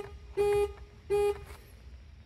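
Honda Fit car horn sounded in three short, evenly spaced toots, one about every 0.7 s, showing the horn works through the new clock spring.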